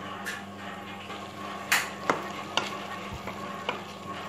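A spatula scraping and knocking in a pan as instant noodle cakes are stirred into a tomato-onion gravy, with a light sizzle underneath. The strokes come irregularly, the loudest a little under two seconds in.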